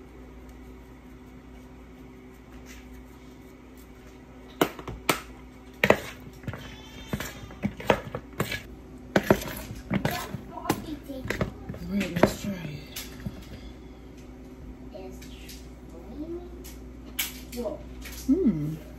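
Metal spoon stirring and scraping a creamy cucumber salad in a mixing bowl, with a run of sharp clicks and knocks against the bowl starting about four seconds in and again near the end, over a steady low hum.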